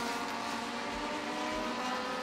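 Turismo Nacional race car engines at speed, holding a steady, unchanging note.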